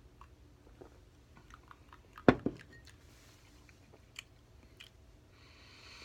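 A man sipping beer from a glass and swallowing: faint wet mouth sounds and small clicks, with a sharp knock a little over two seconds in, followed closely by a smaller one.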